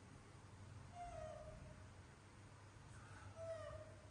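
A young macaque giving two short, high, slightly falling calls, about a second in and again near the end.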